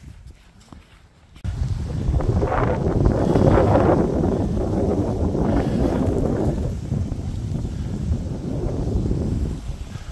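Strong wind buffeting the microphone. It starts suddenly about a second and a half in and goes on as a loud, gusting rumble.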